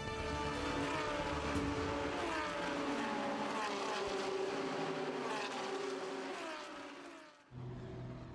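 Racing car engines in a sound-design intro: several engine notes falling in pitch one after another, as of cars passing or downshifting, over held tones, cutting off suddenly near the end.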